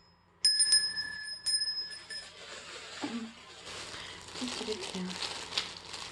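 Small brass hand bell rung a few times about half a second in, its clear ringing dying away after about two seconds. A plastic bag then crinkles as it is handled.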